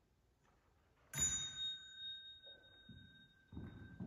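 A small bell struck once about a second in, ringing on with a clear, high, slowly fading tone. Soft low thuds follow near the end.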